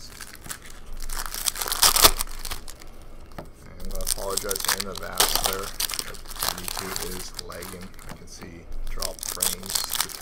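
Foil hockey card pack wrappers crinkling and tearing as packs are ripped open by hand, in irregular bursts with the loudest rip about two seconds in, and cards rustling as they are pulled out.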